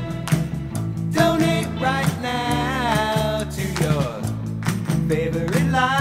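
A 1960s-style rock song played by a band: guitars, bass and drums with a regular beat, and sung vocal lines that glide in pitch.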